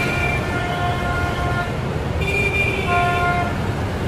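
Car horn sounding in several held blasts, each about a second long, over steady highway road and tyre noise.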